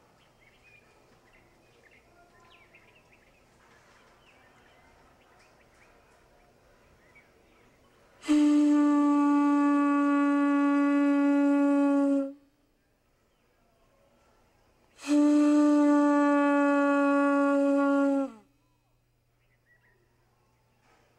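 Conch shell trumpet (pū) blown twice as a morning wake-up call, each a long steady note of about four seconds; the second sags in pitch as it dies away. A faint outdoor background comes before the first blast.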